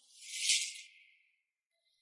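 A short high hissing swish, swelling and fading within about a second, then near silence.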